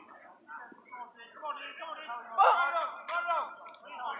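Men's voices calling and shouting across the field, with louder drawn-out shouts in the second half and a sharp click among them.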